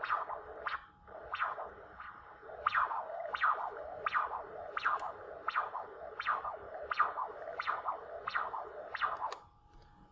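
Pulsed-wave Doppler audio from an ultrasound machine scanning the common carotid artery. There is one whoosh per heartbeat, about every 0.7 s, and each rises sharply at systole and falls away through diastole, while the pulse repetition frequency scale is raised to clear aliasing. The beats stop shortly before the end as the trace is frozen.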